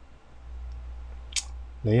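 A single sharp click of a computer mouse button about one and a half seconds in, over a low steady electrical hum.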